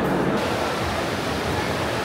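Multi-storey indoor waterfall: water sheeting down a tall wall with a steady rushing hiss. It comes in about a third of a second in, with crowd chatter faint beneath.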